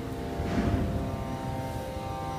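Soft background music holding a steady, sustained chord-like tone, over a low rumble.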